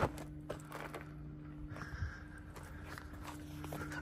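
Faint footsteps and a few light clicks of handling, over a steady low hum.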